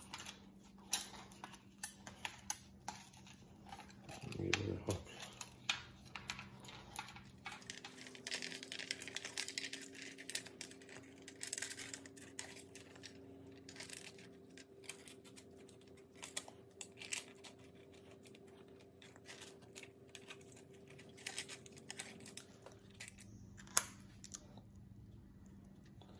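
Light, irregular clicks and ticks of a flat steel rewind spring and a plastic recoil-starter pulley being handled as the spring is worked into the pulley of a lawnmower pull-cord assembly.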